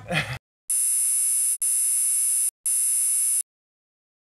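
Three buzzing electronic tones, each just under a second long, one after another with brief gaps: a transition sting between interview segments.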